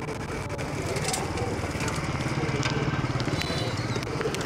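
Small engine of a mini pocket bike running steadily, getting a little louder about two and a half seconds in.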